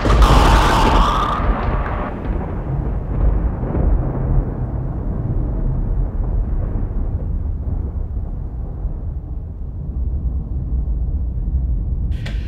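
An explosion sound effect: a loud burst at the start, then a long, deep rumble that slowly fades, its higher part dying away first.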